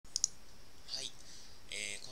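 Two sharp computer-mouse clicks in quick succession right at the start, the loudest sounds here. A faint breathy sound follows about a second in, and a voice starts speaking near the end.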